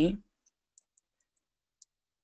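A few faint, short clicks from a computer keyboard and mouse as a user name is entered, spaced irregularly across a near-silent background.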